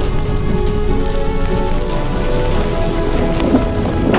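Film sound design of a deep, continuous rumble with fine crackling debris as boulders float up and gather into a stone giant, under held orchestral notes.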